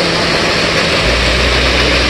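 Waterfall rushing: a steady, even rush of falling water. About a second in, a deep low rumble joins it.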